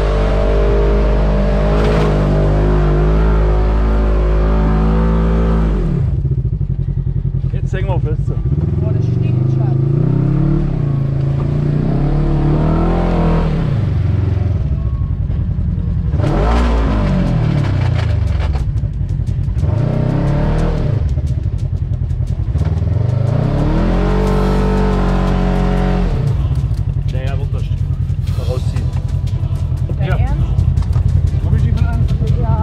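Polaris RZR XP 1000 side-by-side's parallel-twin engine heard from the cab, held at a steady high note for about the first six seconds, then revving up and down again and again as the throttle is worked.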